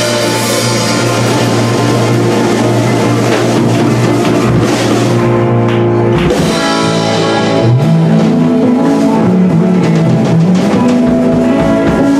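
Live roots-rock band playing an instrumental passage: electric guitar, acoustic guitar, bass guitar and drum kit, with no singing. A long-held low note gives way, about two-thirds of the way in, to a moving line in the low register.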